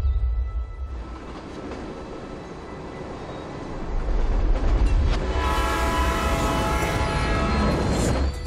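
A train rolling with a low rumble, then its horn sounding one held, multi-tone chord for about two and a half seconds, starting a little after five seconds in.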